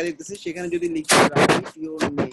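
Computer keyboard keys clacking close to the microphone as a word is typed, with two loud strikes a little past the middle. A man's voice speaks briefly around them.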